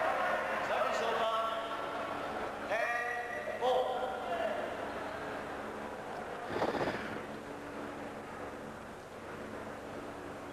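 Several drawn-out shouted calls from spectators in a badminton hall, then a short noisy burst about six and a half seconds in, over a steady low hum.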